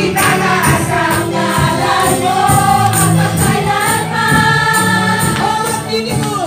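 A congregation and worship leaders singing a praise song together with amplified accompaniment and a steady beat of high percussion.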